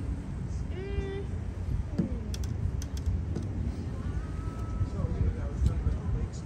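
Wind buffeting the microphone in a steady low rumble, with a few sharp clicks about two to three seconds in and brief snatches of a voice.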